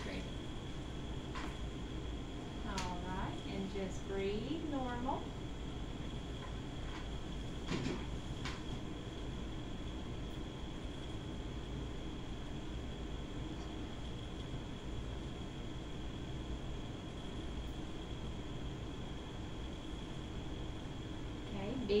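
Steady hum with a constant high-pitched whine throughout. A short voice comes in about three to five seconds in, and a single click near eight seconds.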